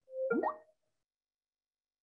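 A short electronic notification blip from video-conferencing software, a quick upward-sliding tone lasting about half a second right at the start, then silence.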